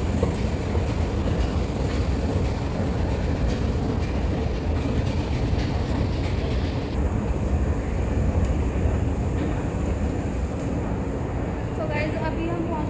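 Steady low rumble of a moving passenger train heard from inside the carriage. The higher hiss drops away suddenly about seven seconds in while the rumble carries on.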